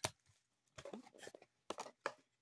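Foil Pokémon booster-pack wrappers crinkling faintly as they are handled and laid down, with one sharper crinkle near the end.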